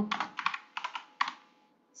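Typing on a computer keyboard: a quick run of keystrokes that stops about a second and a half in.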